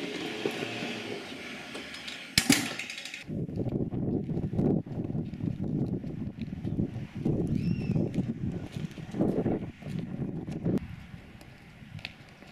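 A door shuts with a single sharp knock about two seconds in. After that comes a rumbling outdoor street noise that swells and fades in stretches and drops away near the end.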